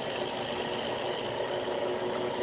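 Benchtop drill press running steadily while its bit slowly cuts a shallow divot into the side of a bolt, fed with very light pressure.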